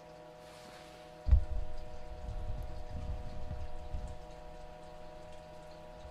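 Handling noise: a sharp low thump about a second in, then a few seconds of uneven low rumbling and bumping, over a faint steady electrical whine of several even tones.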